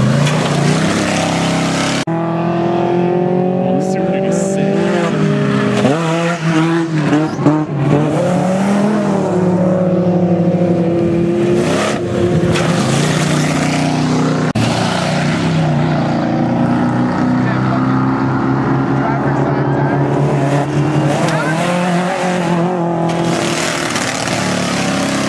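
Off-road race truck engine revving hard, its pitch rising and falling as the truck accelerates and jumps over the dirt track.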